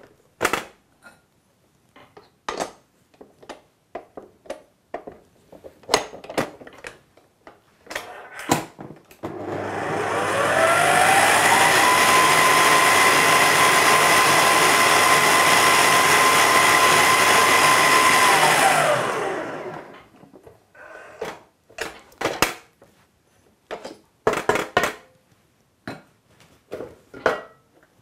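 Electric stand mixer beating butter frosting: the motor whines up to speed about nine seconds in, runs steadily for several seconds, then winds down and stops. Before and after it, clicks and knocks of the metal bowl and plastic splash guard being fitted and handled.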